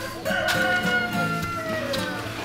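A rooster crowing: one long call, slightly falling in pitch, over acoustic guitar background music.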